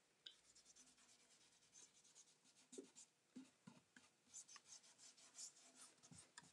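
Near silence with faint, scattered scratching and rubbing strokes.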